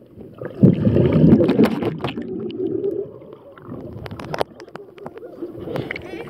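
Muffled underwater sound in a swimming pool, heard through an action camera's housing. About half a second in comes a loud rumble of bubbling, churning water lasting a couple of seconds, then quieter gurgling with scattered sharp clicks.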